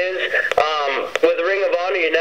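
Only speech: a man talking, with the thin, narrow sound of a telephone line.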